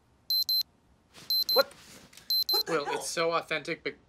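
Electronic alarm beeping in pairs of short, high, identical beeps, three pairs about a second apart, going off by a sleeper's bed.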